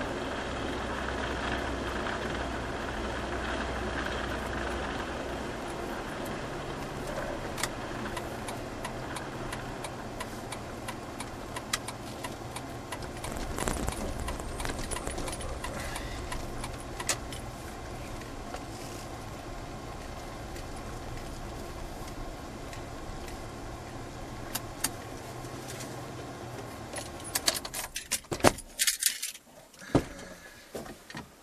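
Cabin noise of a Jeep driving: a steady low rumble at road speed eases as it slows onto a gravel lot, with scattered clicks and rattles. Near the end comes a quick run of jangling clicks from keys at the ignition, and the engine noise stops abruptly as it is switched off.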